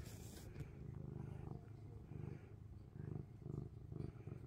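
Domestic cat purring while being scratched under the chin, a sign of contentment: a low rumble that swells and fades about twice a second with its breathing.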